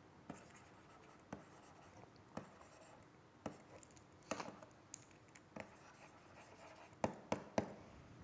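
Faint, irregular taps and scratches of a stylus writing on a tablet, about one tick a second, with three quicker ticks about seven seconds in.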